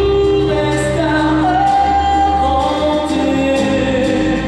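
A male singer sings live into a handheld microphone over musical accompaniment, holding one long note in the middle.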